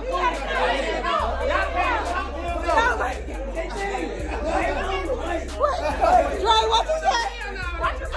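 Several people talking and shouting over one another in excited chatter, with music playing underneath whose deep bass notes change every second or so.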